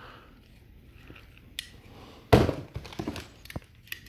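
Handling noise as a stick-welding electrode holder and its coiled rubber lead are lifted among bagged accessories in a cardboard box: soft rustling, a click, then one loud thunk a little past halfway, followed by a few lighter clicks.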